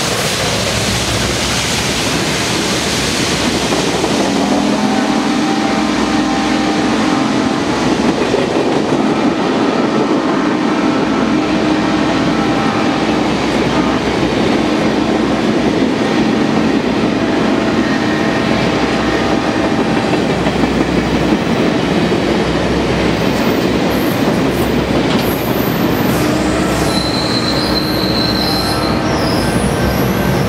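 Passenger train rolling past at close range: a steady rumble and clatter of coach wheels on the rails. A thin, high wheel squeal comes in near the end.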